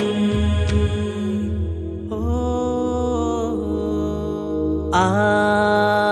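Malayalam Mappila devotional song: accompaniment over a steady low drone with a few light percussion strikes. A singer holds a long "oh" about two seconds in and a long "aah" about five seconds in.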